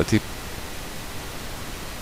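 A steady, even hiss of background noise, following one short spoken word at the very start.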